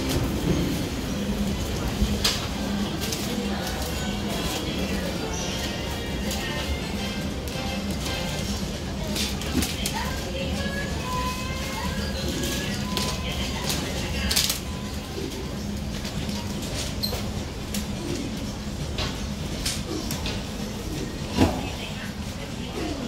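Shop ambience: music playing over a steady murmur of indistinct voices, with occasional sharp clicks and clinks.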